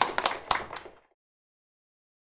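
Audience applauding with distinct, irregular hand claps that cut off suddenly about a second in.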